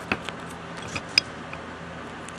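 Light handling of a duct-taped cardboard package: a few small clicks and scrapes, the sharpest a little over a second in.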